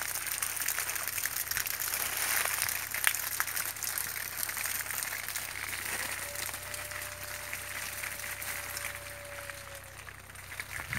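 Water spraying from a hose onto foliage and hanging plastic grow bags: a steady hiss of spray with many small splashes. About six seconds in, a single steady tone of unclear source joins and holds almost to the end.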